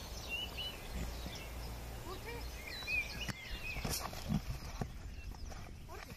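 Outdoor rugby tackling drill on grass: footfalls and a few sharp thuds of players hitting tackle pads, with calling voices and bird chirps over a low outdoor rumble.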